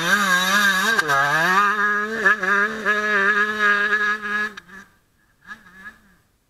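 Husqvarna motocross bike's engine revving hard through a corner, its pitch wavering and dipping briefly about a second in, then held steady before fading out about five seconds in as the bike moves off; a short faint return of the engine near the end.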